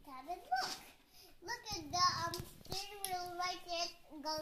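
A three-year-old boy's voice making drawn-out, wavering sounds with no clear words, with a brief low rumble and clicks about halfway through.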